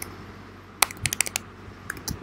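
Typing on a computer keyboard: after a quiet start, a short run of about half a dozen quick key clicks from the middle on, then one more near the end.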